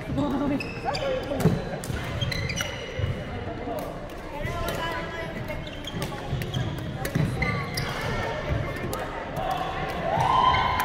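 Doubles badminton rally on an indoor court: repeated sharp racket strikes on the shuttlecock and footfalls on the wooden floor, with a few short squeaks.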